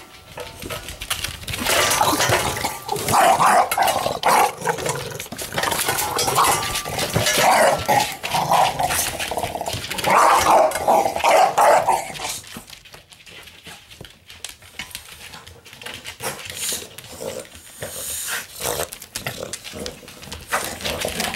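English bulldog growling in a run of loud bursts for about ten seconds, then quieter, with scattered light clicks.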